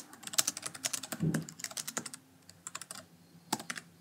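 Typing on a laptop's low-profile keyboard: quick runs of key clicks, a brief pause a little past halfway, then a few more keystrokes that stop shortly before the end.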